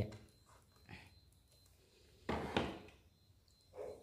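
Handling noises of a plastic cordless pressure-washer spray gun and its hard plastic carrying case: a few soft knocks and rubs, the loudest about two and a half seconds in, as the gun is set down in the case.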